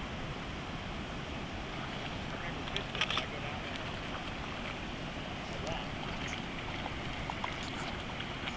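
Steady wind and river noise on the microphone, with a few brief splashes about three seconds in from a hooked sand bass thrashing at the surface as it is played in on a fly line.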